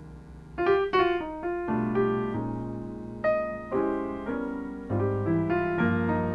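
Steinway grand piano played solo in a jazz introduction: a held chord fades, then about half a second in a quick run of notes follows, and fresh chords are struck every second or so.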